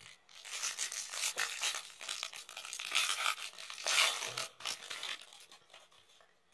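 Foil trading-card pack wrapper crinkling and tearing as it is opened by hand, a run of dense crackling that lasts about five seconds.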